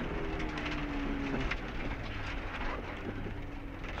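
Subaru Impreza STi's turbocharged flat-four engine running steadily under way on a gravel rally stage, heard inside the cabin over gravel and road noise; one engine tone dips slightly in pitch in the first second and a half.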